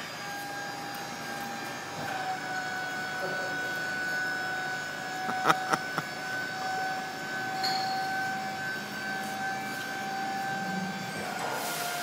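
Tipper truck's hydraulic pump whining steadily as the loaded bed tilts up, a two-note whine that sets in about two seconds in and holds almost to the end. A couple of short knocks sound about halfway through.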